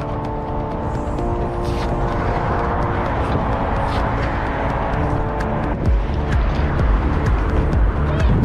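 Background music with held chords and a low beat, laid over the noise of traffic.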